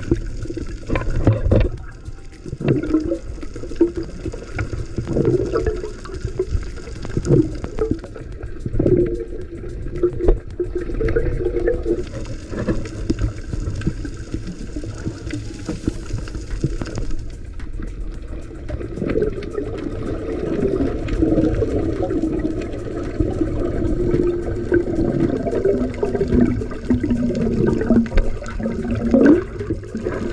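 Underwater sound picked up by a camera in a waterproof housing: a steady muffled low rumble of moving water with bubbling, scattered clicks and wavering tones.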